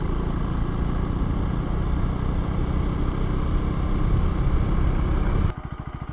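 Husqvarna Svartpilen 401's single-cylinder engine running while the bike rides along at low speed. About five and a half seconds in, the sound cuts suddenly to the engine idling in neutral, a quieter steady pulsing.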